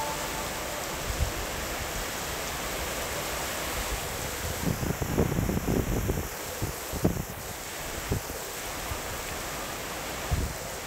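Heavy rain falling on a street, a steady hiss, with bursts of wind rumbling on the microphone around the middle.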